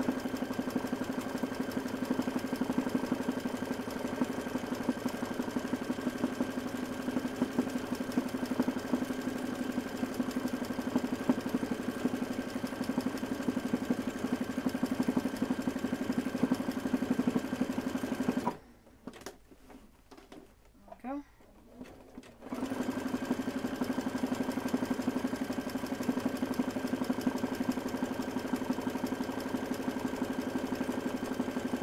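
Domestic sewing machine running at a steady speed, doing free-motion zigzag stitching. It stops for about four seconds a little past the middle, then starts again at the same steady speed.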